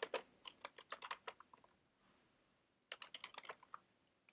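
Faint typing on a computer keyboard: a quick run of keystrokes for about a second and a half, a pause, then another short run near the end.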